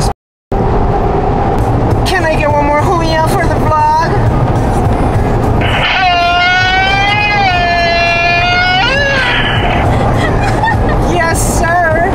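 Steady road noise inside a moving car, with a person's voice over it: short vocal sounds a couple of seconds in, then one long high held note near the middle. The sound drops out completely for a moment just after the start.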